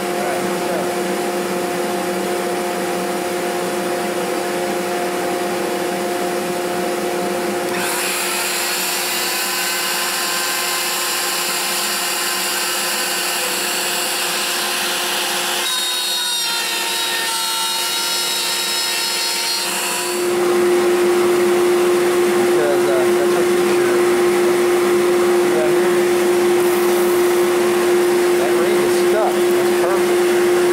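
Router running steadily, with a shop vacuum drawing dust through a hose on the router, while it cuts a circle out of a ring blank on a circle-cutting jig. A higher whine joins about 8 seconds in and drops away about 20 seconds in, when the sound steps up louder.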